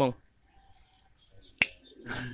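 A single sharp click about one and a half seconds in, after the tail of a man's spoken word.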